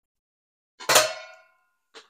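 A single sharp metallic clang about a second in, ringing briefly before it fades, as a metal item is set down or knocked at the ceramic sink.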